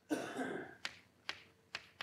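A man's short cough, followed by three sharp taps about half a second apart.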